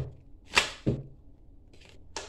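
Tarot cards handled by hand: one quick swish of cards about half a second in, followed by a soft thud.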